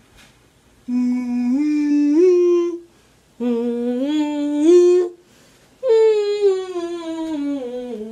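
A girl humming three phrases with a marker pen held between her lips. The first two climb in steps; the last and longest slides steadily downward.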